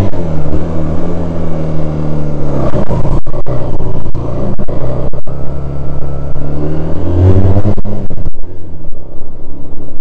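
The engine of a 1978 Honda CD185 180cc twin motorcycle running on the move: steady at first, its pitch dips and then climbs again to a peak a little after halfway, then falls away and goes quieter near the end as the throttle is eased off.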